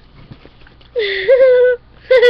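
A child's voice letting out one long, high-pitched vocal sound about halfway through, its pitch dipping and then rising to a held note.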